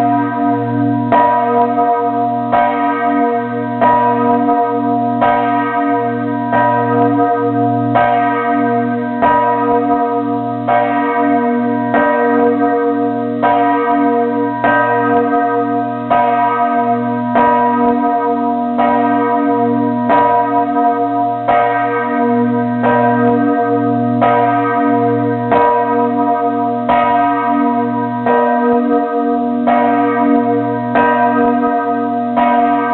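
Church bells ringing in a steady, even rhythm, with a stroke about every one and a quarter seconds, each ringing on into the next.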